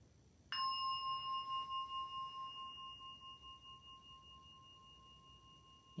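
A meditation bell struck once about half a second in, ringing a clear high tone that slowly fades with a gentle wavering. It is the signal to breathe in deeply and close the eyes.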